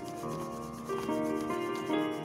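Pencil rubbing quickly back and forth on drawing paper in shading strokes, over background instrumental music with held notes.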